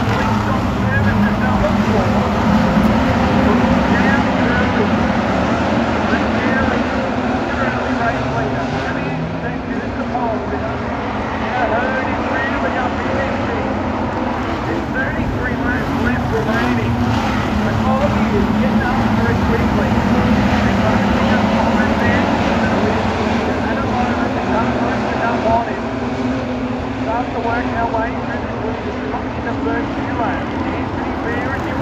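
Street stock race cars' engines running in a pack around a dirt speedway: a steady engine drone that swells and eases slightly as the cars come past.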